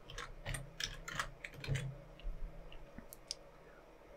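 Computer keyboard keystrokes as code is entered into an editor: a handful of key clicks in the first two seconds, then two more about three seconds in.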